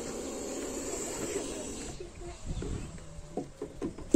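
Black cobra hissing steadily for about two seconds, then a few light knocks and scrapes as a plastic jar is lowered over it.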